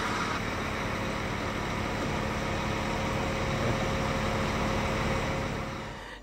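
Scania K410iB bus engine idling steadily, a low mechanical hum with a few faint steady tones, fading out near the end.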